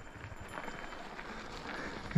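Faint outdoor background: a low steady rumble with a few light, scattered ticks.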